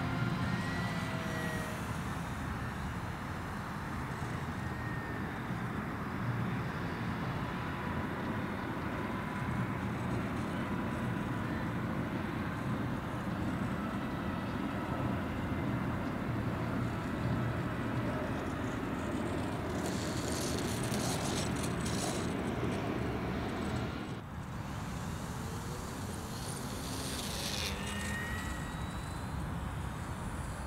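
Small electric motor and propeller of an ultra micro RC trainer plane buzzing in flight, its pitch gliding as it passes, over a steady outdoor noise bed.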